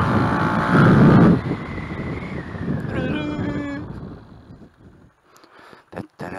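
Tuned Gilera DNA 180 two-stroke scooter engine accelerating, rising in pitch and loudest about a second in, then fading away as the throttle is closed and the scooter slows. There is wind noise on the helmet-mounted microphone.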